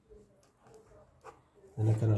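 Faint scratches of a pen drawing lines on paper, under quiet low muttering. A man's voice starts loudly near the end.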